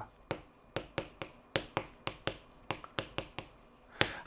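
Chalk writing on a chalkboard: about a dozen short, sharp taps at an uneven pace as the chalk strikes and lifts off the board while characters are written.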